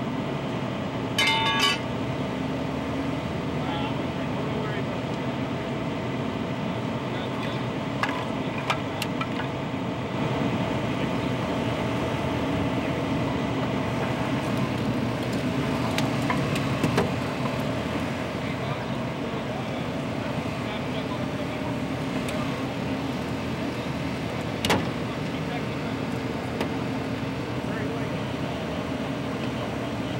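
Steady engine drone of emergency vehicles and rescue equipment running at a crash scene, with rescue workers talking in the background. A short high beeping tone sounds about a second in, and a few sharp metal clanks follow later.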